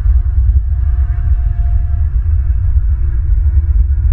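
Wind buffeting an outdoor nest-camera microphone: a loud, uneven low rumble, with a faint steady hum above it.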